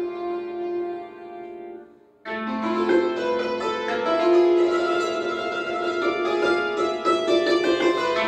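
Concert cimbalom played with mallets: ringing notes fade to a brief pause about two seconds in, then a loud passage of rapid, densely struck notes starts suddenly.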